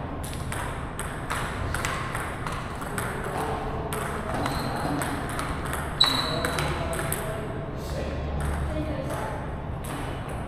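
Table tennis balls clicking off paddles and tabletops in rapid, irregular strikes from several tables rallying at once, with one sharp, loud hit about six seconds in.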